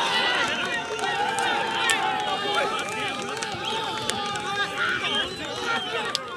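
Several men's voices shouting and calling over one another on a soccer pitch, an excited babble with no single clear speaker.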